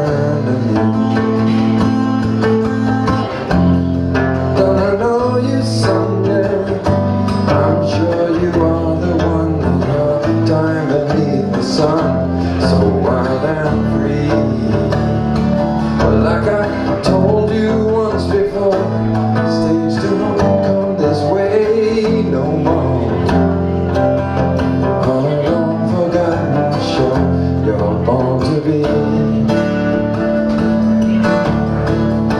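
Acoustic guitar strummed and picked in a steady rhythm, moving through chord changes with a strong bass line: an instrumental passage of a solo song.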